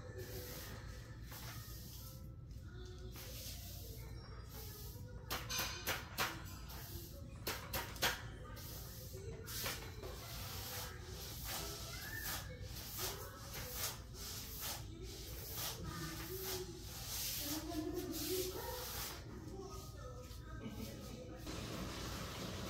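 Broom bristles sweeping a tile floor, a soft repeated swish, with a few sharp knocks of the broom and plastic dustpan against the tiles about five to eight seconds in.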